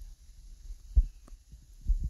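Two dull, low thumps, the first about a second in and the louder, the second just before the end, over a faint low hum.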